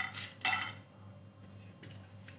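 Raw peanuts clattering into a dry nonstick frying pan: a short rattle at the start and another about half a second in, then only a faint low hum.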